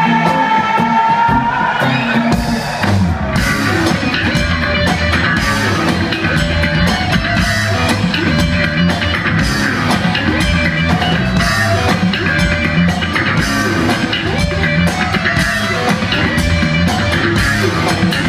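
Rock band playing live in a concert hall, heard from the audience: bass, electric guitar and drum kit in a steady driving rhythm.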